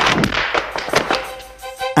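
A hard hit at the start that rings away, then a few smaller knocks, like the impacts of a fight scene, with music whose held notes come in about halfway.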